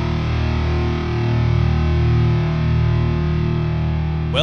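Theme music of distorted electric guitar through effects, a dense chord with heavy low notes held and ringing steadily.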